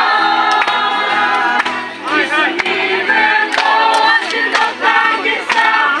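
A group of people singing together, many voices on held notes that change every second or so, with sharp ticks here and there.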